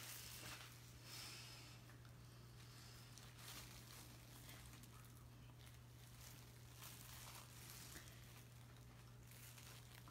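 Near silence: room tone with a steady low hum and a few faint rustles.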